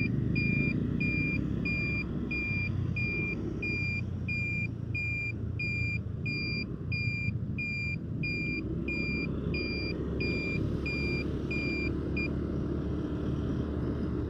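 Turn-signal buzzer beeping steadily about twice a second, a short high beep each time, with the indicator on through a U-turn at a roundabout; the beeping stops near the end. Under it runs the low rumble of the motorcycle's engine and the road.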